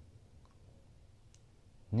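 Quiet room tone with a couple of faint, isolated clicks; a man's voice starts right at the end.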